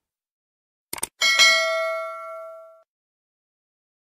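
Subscribe-button animation sound effect: a quick double mouse click about a second in, then a bright notification-bell ding that rings out and fades over about a second and a half.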